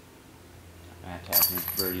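Disc golf putt striking the hanging metal chains of a chain basket: a sudden metallic clash about a second and a half in, then a short jingling ring of the chains as the disc drops in for a made putt.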